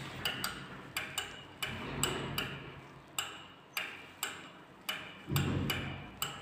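Lift landing call button being pressed over and over: repeated sharp mechanical clicks, roughly two a second and unevenly spaced, some in quick pairs. A low rumble comes in near the end.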